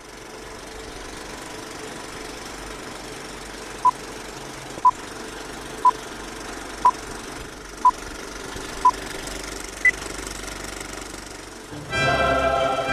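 Vintage film countdown leader effect: the steady clatter of a running film projector, with a short beep once a second starting about four seconds in, six at one pitch and a seventh, higher beep near the end.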